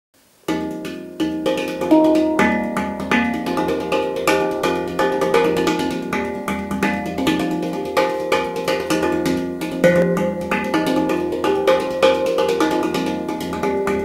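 PANArt Hang, a steel handpan, played with the fingers and hands: a fast run of strikes on its tone fields, the pitched notes ringing over one another. It starts about half a second in.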